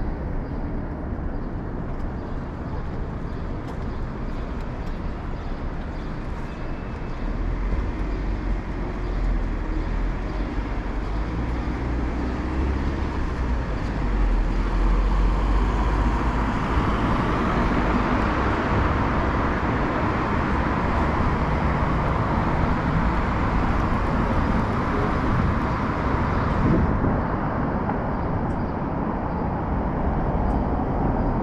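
Urban street traffic: cars and vans passing through an intersection, with engine rumble and tyre noise. A deeper rumble of a heavier vehicle builds about a quarter of the way in, and the traffic grows louder from about halfway, dropping off suddenly near the end.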